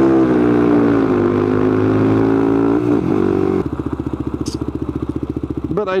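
Quad (ATV) engine running steadily under throttle, its pitch dipping and rising a little. About three and a half seconds in, the throttle comes off and it drops to a quieter, evenly pulsing run.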